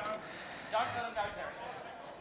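Faint background speech: a voice talks briefly and quietly about a second in, over low room noise.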